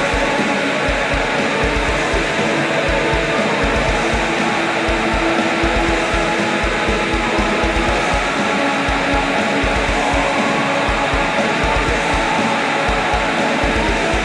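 Atmospheric black metal: a dense, loud wall of distorted guitars over fast, pounding kick drums, with vocals delivering the lyrics.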